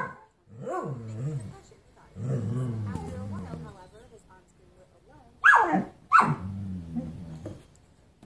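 Dog growling while baring its teeth at another dog, in drawn-out bouts that waver in pitch, with two sharp, louder barks about five and a half seconds in before the growling resumes.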